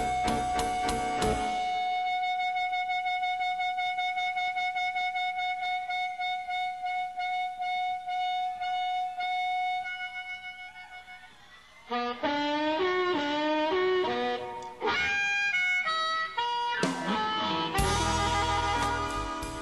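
Live blues band stops and a blues harmonica holds one long note for about ten seconds, fading away, then plays an unaccompanied run of bent notes before the full band crashes back in near the end.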